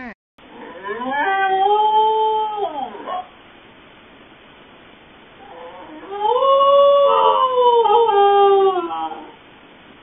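A dog howling twice, each howl a long held note of two to three seconds that rises, holds and falls. The second howl is louder and slightly higher. It is heard thinly through a pet camera's microphone.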